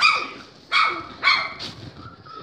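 A young puppy barking: three short, high-pitched yapping barks about half a second apart.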